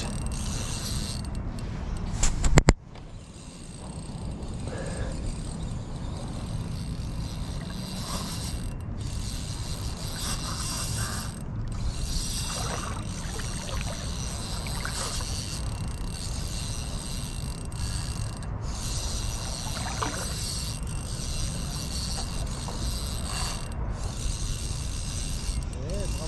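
Spinning reel, a Daiwa Certate 2500S LT, being cranked steadily as a hooked fish is reeled in, with a loud bump about two and a half seconds in.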